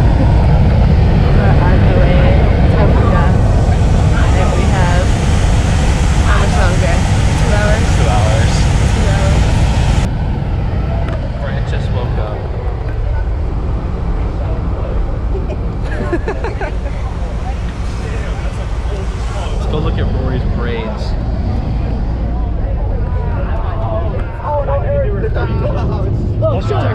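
Low, steady engine and road rumble inside a bus cabin, with indistinct passenger chatter over it. The sound drops abruptly in level and turns duller about ten seconds in.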